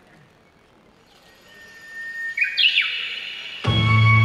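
Intro of a recorded yosakoi dance track over a PA: after a quiet first second a swell rises with high, stepping tones, then the full music comes in loudly with heavy bass near the end.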